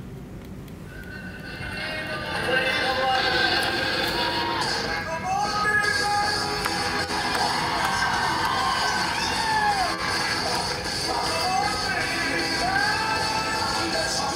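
Music with a singing voice playing from a first-generation iPad's built-in speaker, rising in level over the first two seconds as the streamed video starts.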